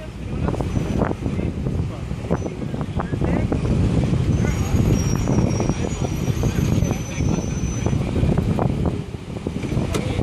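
Outdoor street noise: a steady low rumble with indistinct voices underneath.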